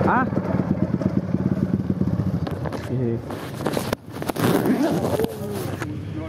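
Dirt bike engine idling with a fast, even pulse, under a few brief words of men's voices. About three seconds in, a rushing, rubbing noise lasting about two seconds drowns it out.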